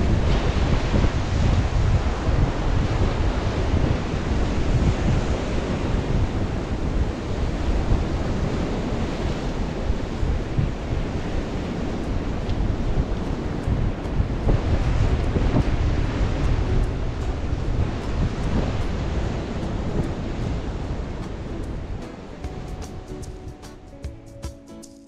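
Surf breaking against a rocky shore, with wind rumbling on the microphone; the noise eases near the end as music fades in.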